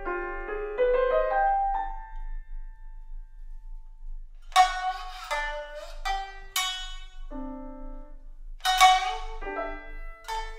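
A grand piano plays a short flurry of notes that rings away, and after a brief pause a shamisen (sangen) comes in with a series of sharp plucked notes. Near the end a held tone sounds beneath the shamisen.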